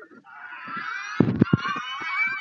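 Several video soundtracks playing over one another from a computer: many high, wavering pitched tones layered together, building up shortly after the start, with a few loud low thumps about halfway through.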